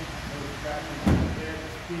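A single heavy, dull thump about a second in, set against a man's brief low speech.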